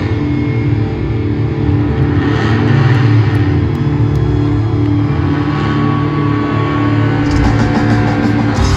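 Rock band playing live at concert volume, recorded from the crowd: distorted guitars and bass holding long, steady chords.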